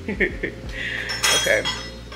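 Dishes and cutlery being handled on a kitchen counter: a few light clicks and rattles, then a ringing clink a little over a second in.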